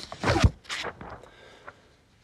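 A soft low thump with brief rustling noises in the first half-second, then a few faint clicks fading into quiet room tone.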